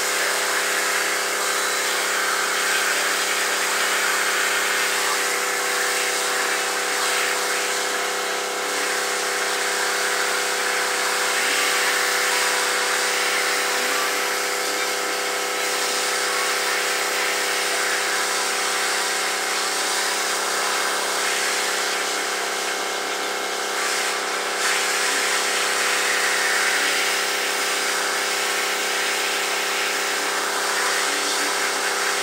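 Steady hiss of water from a hose spray nozzle spraying onto a soapy area rug, over a steady machine hum.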